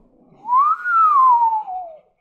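A person whistling one gliding note that rises and then falls slowly, a mouth sound effect for something sailing through the air in an arc.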